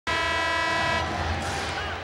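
Basketball arena horn sounding one steady, multi-toned blast that cuts off about a second in. Crowd noise from the arena follows.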